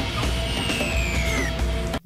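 Loud horror-film soundtrack: music over a dense rushing noise and a low rumble, with a high tone gliding downward in the first second and a half. It cuts off abruptly at the end.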